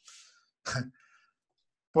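A man clears his throat once, briefly, just after a faint breath.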